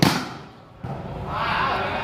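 A volleyball struck hard by hand once, a sharp smack that rings out briefly under the metal roof, followed by crowd voices.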